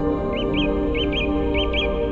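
Bird chirps in three quick pairs, each chirp a short rise and fall in pitch, over sustained, slowly shifting ambient new-age music tones.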